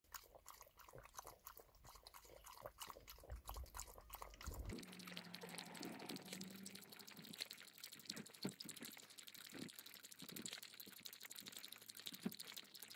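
A small dog lapping water from a bowl: a faint, quick run of wet laps and clicks, drinking greedily.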